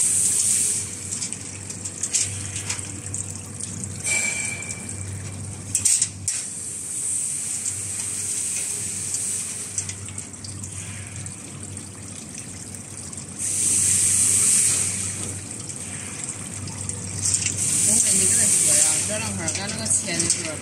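Automatic chain link fence machine weaving wire through its mould in short runs: a hissing scrape comes in bursts of a second or two over a steady low hum, with a few sharp clicks.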